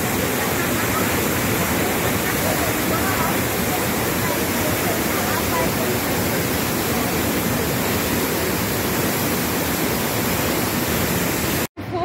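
The Rhine Falls: a loud, steady rush of falling water, dense across all pitches, with faint voices of onlookers in it. It cuts off abruptly near the end.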